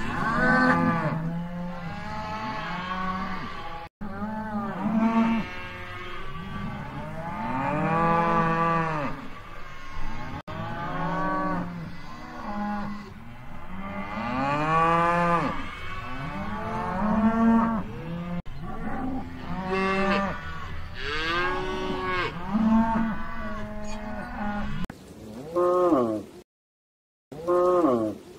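Cattle mooing over and over, long calls that rise and fall in pitch and often overlap one another, with a few very short breaks in the sound.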